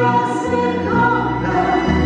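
A man and a woman singing a duet live, backed by a folk-pop band with button accordion, guitars and bass guitar.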